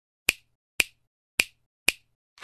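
Finger-snap sound effect: four sharp snaps, about half a second apart, with silence between them.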